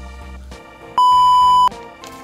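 A single loud, steady electronic beep lasting under a second, starting about a second in, over background music.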